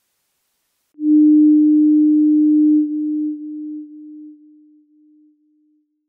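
A single steady electronic tone, a pure note of middling pitch, comes in about a second in, holds for about two seconds, then fades away in a string of echo-like repeats over the next three seconds: the sound of the channel's closing ident.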